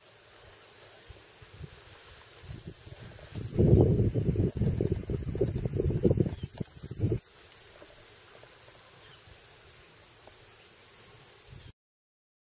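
Open-air field ambience with a gust of wind buffeting the microphone, a low irregular rumble lasting about four seconds in the middle. The sound cuts off abruptly near the end.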